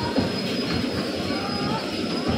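Electric bumper cars running around the rink: a steady rolling rumble with a faint, high, steady whine.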